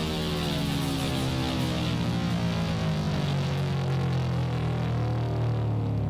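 Hard rock recording playing: a long held electric guitar sound whose pitch slowly slides downward.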